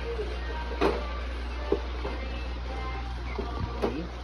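Knocks and clicks of an iimo folding children's tricycle frame being folded, with one sharp knock about a second in and lighter clicks later, over a steady low hum.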